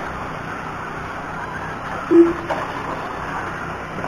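Electric short course RC trucks running on a clay track, a steady noise of motors and tyres, with one short electronic beep about two seconds in, typical of a lap-counting system as a truck crosses the timing line.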